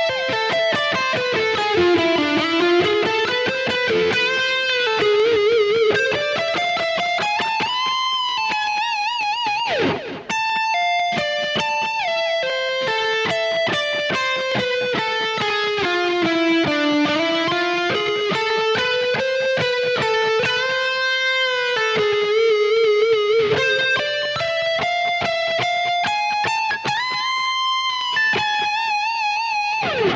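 Kiesel DC700 electric guitar, tuned a whole step down and played through a Kemper, playing an alternate-picked lead lick of fast note runs with bends and pull-offs. Held notes are shaken with vibrato about nine seconds in and near the end, and there is a brief break with a sliding note about ten seconds in.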